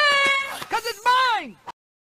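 A high-pitched cartoon character voice: a long held cry, then a shorter cry about a second in that falls in pitch. The audio then cuts off abruptly into silence.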